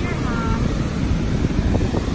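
Wind buffeting the microphone over breaking surf, a steady low rumble, with a brief falling high-pitched sound right at the start.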